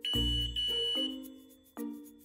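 A single steady high-pitched electronic beep lasting about a second, with a low thump at its start, from the ALC Connect Plus security control hub powering up just after its power adapter is plugged in. Background music plays underneath.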